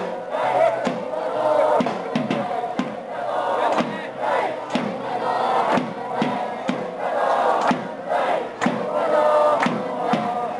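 A crowd of protesters chanting together in unison, over a steady beat about twice a second.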